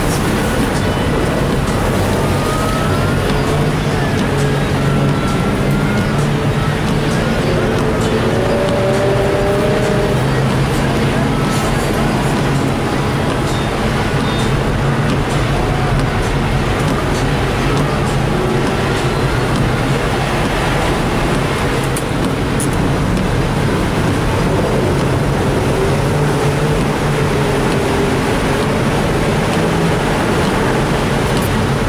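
Race car engine heard from inside the cabin, running hard and continuously, its pitch rising and falling as it revs up and down, over a steady rush of tyre and road noise on ice and snow.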